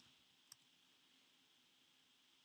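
Near silence: quiet room tone with a single faint click about half a second in, from a mouse or keyboard.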